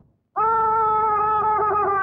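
A long, high-pitched vocal cry of 'aaah', starting about half a second in and held at one pitch with a slight wobble.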